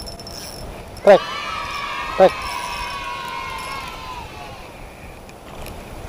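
A Shimano FX1000 spinning reel whirring steadily for about three seconds, its pitch sinking slightly as it slows and then fading out. A snakehead has just struck the lure on ultralight tackle.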